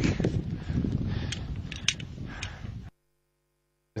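Wind noise and gear rustle on a climber's helmet-camera microphone on an ice slope, with a few light clicks; it cuts off abruptly about three seconds in.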